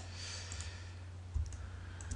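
A few computer mouse clicks, the loudest about one and a half seconds in, over a steady low hum.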